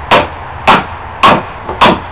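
Hammer blows ringing on steel driven into a yew log to split it: four sharp clangs about half a second apart, with a faint lighter tap just before the last.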